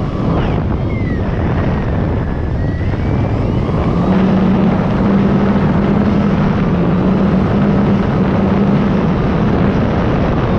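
E-flite Night Timber X's electric motor and propeller droning, heard from the onboard camera with wind rushing over its microphone. A higher whine slides down and then back up in pitch in the first few seconds, and the drone grows steadier and a little louder from about four seconds in.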